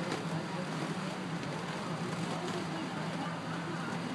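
Steady hum and rush of an inflatable bounce house's electric air blower running continuously to keep it inflated.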